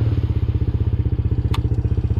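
Can-Am Renegade 110 youth ATV's small single-cylinder four-stroke engine idling with an even, fast putter after a full-brake stop. One sharp click comes about one and a half seconds in.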